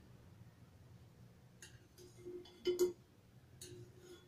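A few light metal clinks and scrapes of a spiral wire skimmer against a frying pan as a test piece of dough is lifted out of the hot oil, the loudest clink about three-quarters of the way in.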